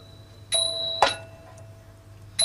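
Small metal percussion of a Thai shadow-puppet music ensemble, struck about half a second in and ringing with a clear bell-like tone, then a sharp click about a second in as the ringing fades.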